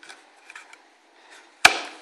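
Hands handling a Kydex cheek rest on a rubber-overmolded rifle stock: faint rubbing and small clicks, then one sharp knock near the end.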